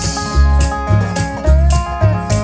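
Acoustic country band playing a short instrumental passage between vocal lines: upright bass notes on a steady beat, tambourine shakes and strummed and picked guitar.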